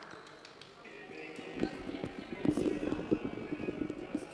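Repeated footsteps and taps on a sports-hall floor, starting about a second and a half in, with voices in the hall.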